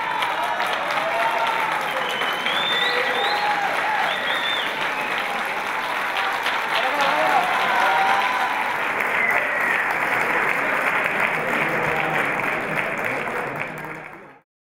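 A roomful of senators applauding, with voices calling out and talking over the clapping. The applause fades out near the end.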